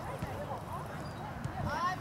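Distant voices shouting across an outdoor soccer field during play: short calls about half a second in and again near the end, over a steady low rumble.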